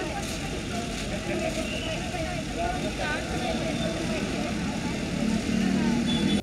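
Outdoor crowd and street ambience: a steady hum of traffic with people talking indistinctly in the background.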